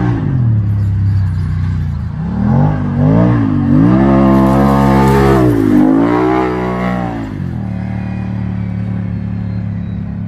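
Can-Am Maverick 1000's V-twin engine revving up and down several times as the side-by-side is driven. It settles to a steadier pitch for the last couple of seconds.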